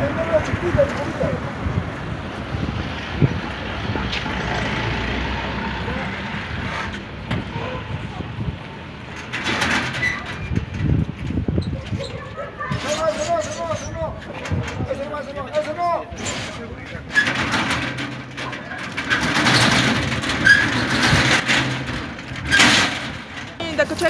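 Indistinct voices over street noise, with a steady rushing noise through the first several seconds.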